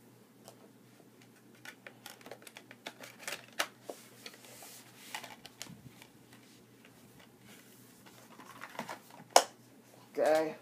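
Scattered clicks and taps of steelbook Blu-ray cases and discs being handled, with one sharper click near the end.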